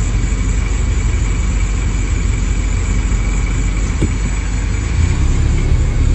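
Car engine idling: a steady low rumble that grows a little louder near the end.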